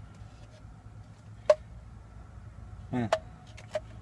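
AeroPress coffee maker's plastic parts being handled: one sharp click about one and a half seconds in, then a couple of lighter clicks near the end, over a low steady hum.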